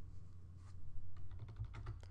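Faint clicks of computer input, a quick run of them about a second in, over a low steady hum.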